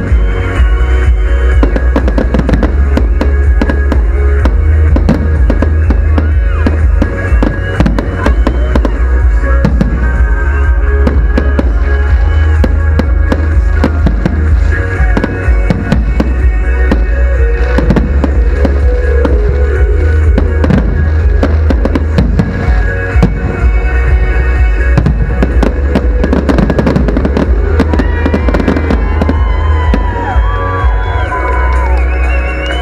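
Aerial fireworks going off in a dense run of bangs and crackles, over loud music with a heavy bass.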